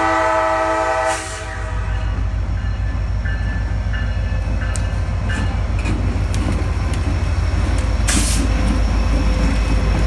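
CSX SD40-3 diesel locomotive's horn sounding and cutting off about a second in, followed by the locomotive's EMD 16-645 two-stroke diesel engine running as it rolls slowly past close by. Short wheel squeals and a couple of sharp clanks come from the wheels on the rails.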